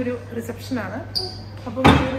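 A single loud, sudden thump just before the end, over a steady low hum and scraps of voices.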